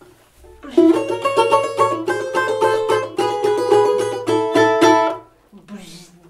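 Balalaika strummed in a rapid tremolo, playing a short melody of ringing notes for about four and a half seconds before stopping abruptly near the end.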